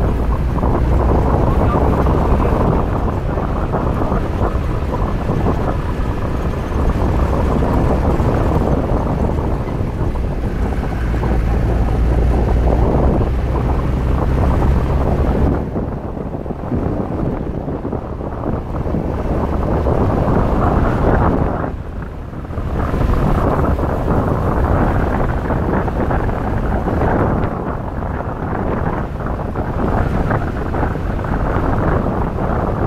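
Safari vehicle driving, a steady rumble of engine and road noise with wind buffeting the microphone. The low engine drone drops away about halfway through, and the sound dips briefly a few seconds later.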